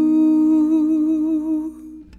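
A singer holds one long note with vibrato over ringing acoustic guitar. The note fades out near the end as the song winds down.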